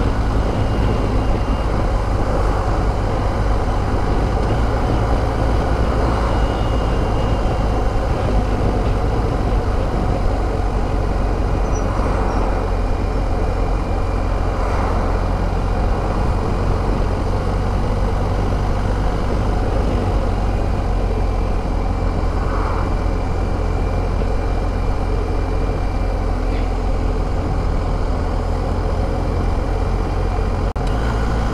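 BMW R1250 GS Adventure's boxer-twin engine running steadily while the motorcycle cruises, a continuous low rumble mixed with wind and road noise at the rider's position.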